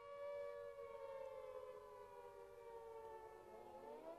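Faint civil defence air-raid siren wailing as an attack warning, its pitch slowly falling and then rising again near the end.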